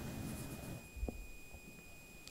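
Quiet room tone with a faint steady high-pitched whine and one soft click about a second in.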